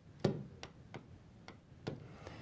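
Stylus tapping on the glass of a touchscreen display while writing by hand: about five short, sharp ticks at uneven intervals, the first and last the loudest.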